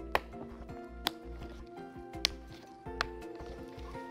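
Soft background music with steady held tones, over which four sharp clicks come at uneven intervals: snap fasteners being pressed home as a fabric car-seat pad is snapped onto the seat's plastic side panels.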